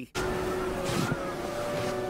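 Steady rushing wind under a faint sustained music tone, with a brief gust about a second in: the cartoon's sound of a freezing, blizzard-swept scene.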